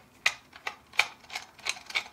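A small screwdriver unscrewing a tiny screw from a plastic printer housing: about six sharp clicks, roughly three a second, as the screwdriver is turned in short twists.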